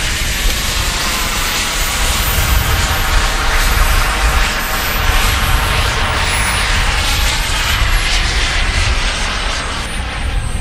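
Turbine engine of a radio-controlled model jet running as the jet rolls down the runway: a loud, steady rushing sound with a thin high whine that drifts lower in pitch in the second half.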